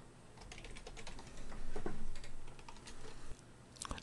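Computer keyboard typing: a run of quick keystrokes entering login details, stopping about three and a half seconds in, with another click or two just before the end.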